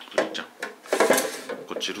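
Hands wiping a clear acrylic case with a tissue and shifting it on a tabletop: plastic rubbing and scraping with light knocks, loudest about a second in.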